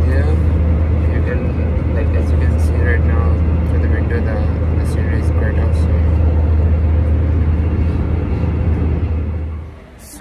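Loud, steady low drone of an airliner cabin, engine and air-system noise, with faint voices over it; it cuts off abruptly near the end.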